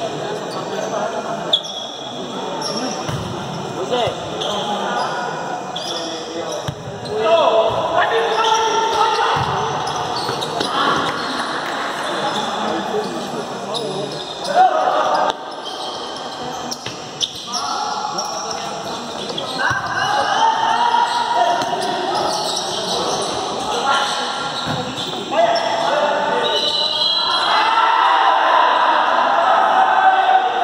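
Futsal being played on an indoor court: sharp thuds of the ball being kicked and bouncing, with players' and onlookers' shouts ringing in the large hall.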